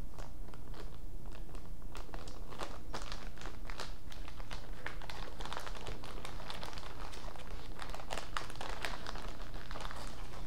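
Thin plastic bag crinkling and rustling as gloved hands fold and work it, in irregular crackles that get busier about two seconds in, over a steady low hum.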